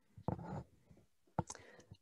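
A woman's faint breathing and a quiet murmur in a pause between sentences, with a brief sharp breath or click about one and a half seconds in.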